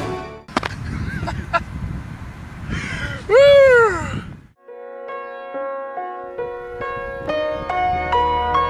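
Outdoor live sound with a rushing noise and a man's loud, drawn-out whoop that rises and falls a little before halfway. Soft music of held, piano-like notes starts about halfway through.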